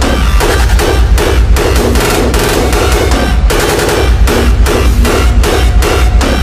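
Hardstyle/rawstyle electronic dance music: a heavy distorted kick drum pounding a fast, even beat, with synth layered over it.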